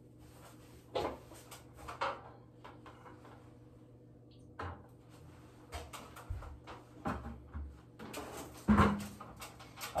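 Handling noises from tiling work: scattered light knocks and rubbing as a wet sponge is worked over wall tile and an orange plastic bucket is picked up and handled. The loudest sound is a thud near the end as the bucket is set down on the tiled ledge.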